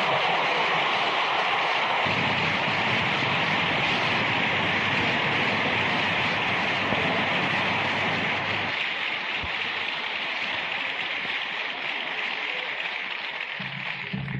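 Audience applauding steadily, slowly dying away towards the end.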